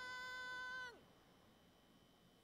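A cartoon character's drawn-out, high-pitched shout of "stupid!" held on one steady note. It falls away in pitch and stops about a second in, leaving faint background sound.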